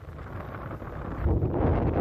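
Wind buffeting the microphone, its low rumble growing louder about a second in, over small waves washing up on a sand beach.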